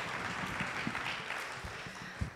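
Audience applauding, the clapping slowly fading toward the end.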